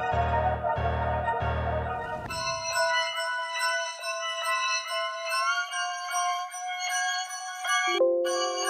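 A trap beat plays back, a deep 808 bass pulsing under a melody. About two seconds in it cuts off, and a bright keys melody loop plays on its own with no bass or drums.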